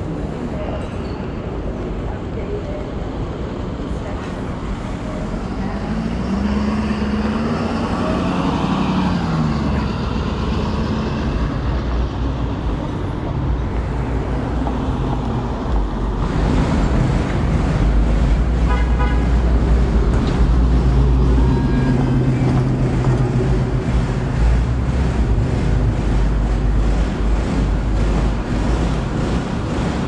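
City street traffic: a vehicle drives past about six seconds in, its engine note rising then falling, and from about sixteen seconds on a heavier low engine rumble runs under the street noise.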